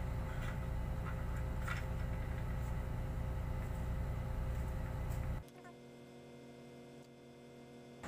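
Scissors cutting a thin rubber sheet, with a faint snip or two, over a steady low background hum. About five and a half seconds in, the hum drops away abruptly and it goes much quieter.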